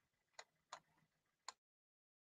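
Three faint, sharp clicks, unevenly spaced, over faint room hiss; a second and a half in, the sound cuts out to dead silence.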